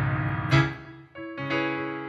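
Grand piano played in sustained chords. A chord struck about half a second in rings and fades, then new chords come in just after the one-second mark.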